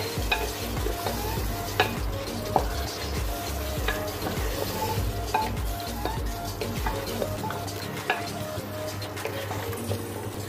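Mutton pieces frying in oil with yogurt in a pan, with a steady sizzle. A spatula stirs them, scraping and tapping against the pan at irregular moments.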